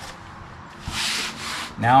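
Hands rubbing and sliding across marine vinyl, pressing it down onto a contact-cemented plywood panel to flatten it. A brief rubbing sweep comes about a second in.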